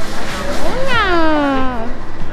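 A single drawn-out meow-like call, rising at first and then sliding down in pitch over about a second.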